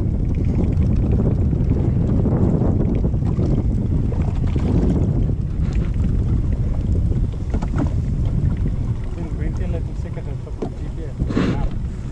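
Steady wind rumbling on the camera's microphone over choppy water, with water lapping against a small boat's hull. It eases a little in the second half.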